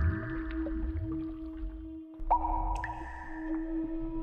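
Electronic logo sting: a steady low drone with a shimmering swell, joined about two seconds in by a second sharp-edged swell, over a low rumble.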